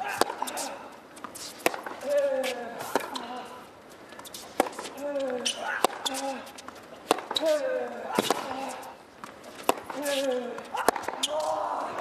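Tennis rally on a hard court: racket strikes on the ball about every second and a half, with a short grunt from a player on many of the strokes.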